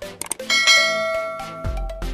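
A bell-chime sound effect, the kind that comes with a subscribe-and-notification-bell animation, strikes about half a second in and rings down slowly over background music.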